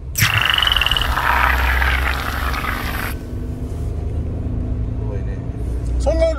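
Inside the cabin of a Suzuki Jimny JB64 on the move: a loud hissing rush starts suddenly and cuts off after about three seconds, then steady engine and road noise.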